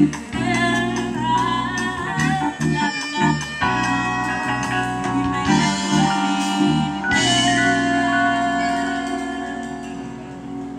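Live jazz band playing, with drums and pitched melody lines, then settling onto a long held chord about seven seconds in that dies away near the end.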